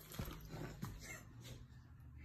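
A beagle faintly licking and chewing at a potato stick held in someone's fingers, a few soft mouth clicks.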